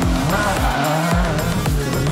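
Electronic music with a heavy beat, about two thuds a second, laid over rally car sound: an engine revving and tyres squealing as the car slides.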